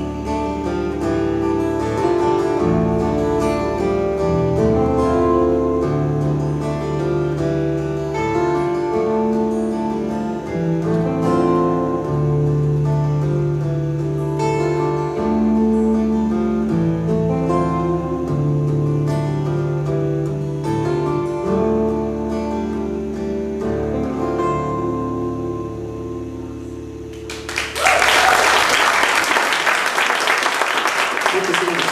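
Two acoustic guitars and an electric bass playing an instrumental passage through to the end of a song, the notes thinning out and fading about 26 seconds in. Audience applause breaks out loudly near the end.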